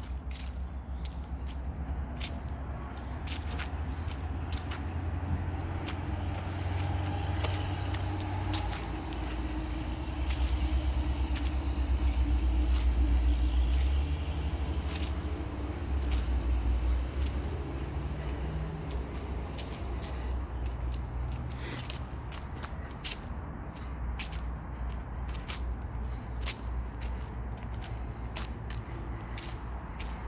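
Steady high-pitched drone of insects in the woods, with the regular taps of footsteps on a paved path. A low rumble swells about ten seconds in, is loudest for a few seconds, and eases off after about seventeen seconds.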